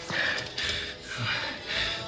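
Indistinct background chatter with faint music, moderately loud, and a faint voice about a second in.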